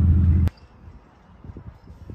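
Ford Mustang V8s idling with a deep, steady rumble that cuts off suddenly about half a second in. Faint, irregular low knocks and rustling follow.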